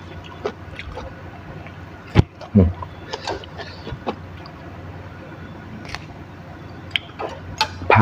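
Crisp leafy vegetable stems being snapped and torn apart by hand: a scattering of sharp snaps, the loudest about two seconds in, over a steady low hum.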